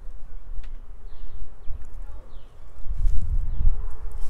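Plastic row-cover film rustling as it is lifted off the hoops of a raised garden bed, over a low rumble that is loudest about three seconds in.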